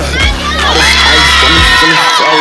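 Crowd of spectators cheering and shouting in high-pitched voices, rising about a second in, over hip hop music whose bass beat drops out near the end.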